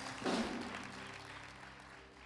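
Congregation applauding: a short round of hand clapping that swells just after it starts and then dies away.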